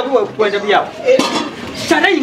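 People talking, with a few light metallic clinks mixed in.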